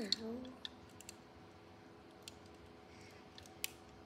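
A handful of scattered light plastic clicks as the parts and joints of an assembled RX-93 ν Gundam plastic model are handled and posed.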